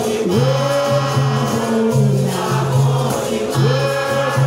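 Capoeira Angola roda music: berimbaus and pandeiros playing a steady, repeating rhythm under a group of voices singing together.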